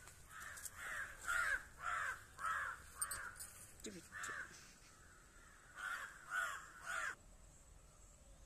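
A crow cawing repeatedly: about six caws in quick succession, a short pause, then three more.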